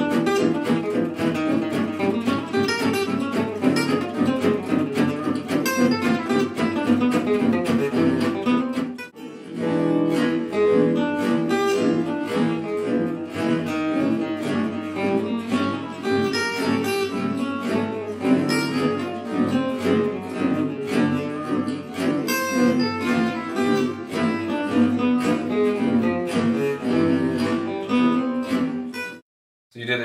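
Gypsy jazz acoustic guitars: a lead guitar soloing over rhythm guitar accompaniment, a bridge phrase built on tritone substitutions (B flat 7 over E7, A flat 7 over D7). The phrase plays once at normal speed, breaks off briefly about nine seconds in, then plays again slowed down.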